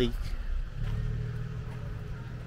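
A car engine running, a steady low hum that sets in about a second in.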